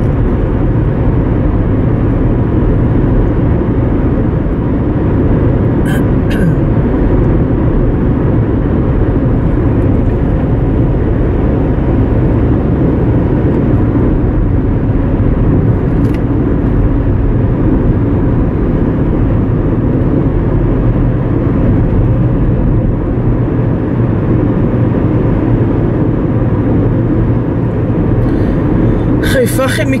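Steady low rumble of tyre and engine noise inside a car's cabin while cruising on a highway.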